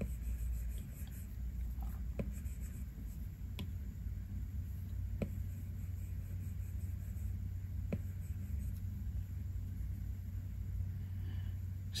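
Apple Pencil 2 tip tapping and stroking on an iPad Pro's glass screen, a few faint taps over a steady low hum.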